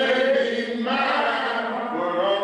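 Slow singing by voices in long held notes that slide from one pitch to the next, in the manner of a chanted hymn.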